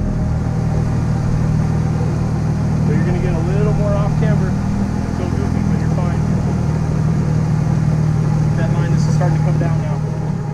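Jeep engine idling steadily close by, with faint voices about three seconds in and again near the end.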